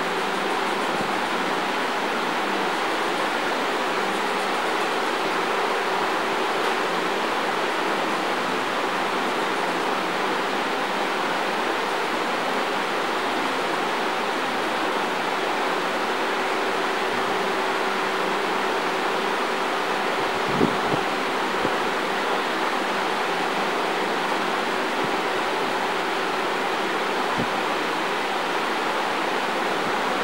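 A steady, even hiss with a couple of brief soft knocks, the first about two-thirds of the way through and another near the end.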